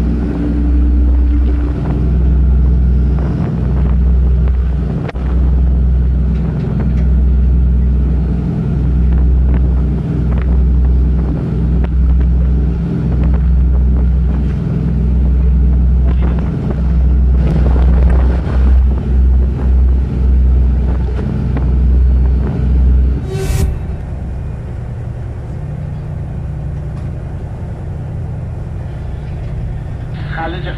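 A ship's engines droning steadily, with a deep rumble of wind buffeting the microphone on the open deck that breaks in and out irregularly. After a sharp click about three-quarters through, the buffeting stops and a quieter, steady machinery hum is left.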